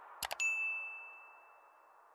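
Subscribe-button sound effect: two quick mouse clicks, then a bright bell ding that rings on and slowly fades, over fading background music.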